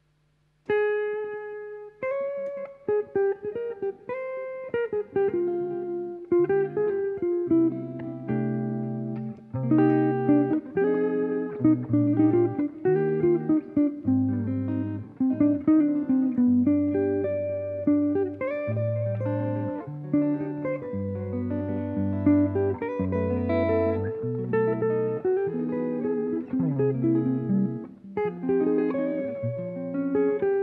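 Electric and acoustic guitar duo playing a jazz piece. It opens about a second in with a single held note, then goes on with chords and low bass notes under a melody line.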